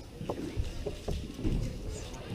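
Low rumble of a busy room with faint indistinct chatter, and a few soft knocks and rustles close to the microphone, as of paper and hands on the table.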